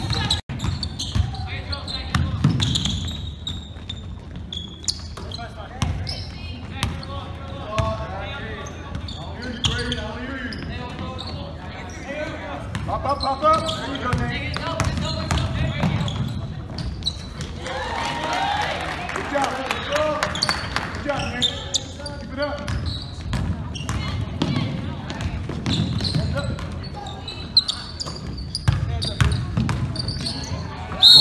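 Basketball bouncing and dribbling on a hardwood gym floor, with voices of players and spectators and the echo of a large gym.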